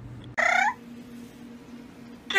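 A single short, squeaky chirp from a rosy Bourke's parrot, about half a second in, as a finger boops its beak.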